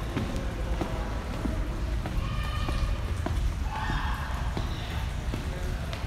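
Footsteps on a hard stone floor, about two a second, over a low steady rumble on a handheld phone microphone. Faint voices of other people come in around the middle.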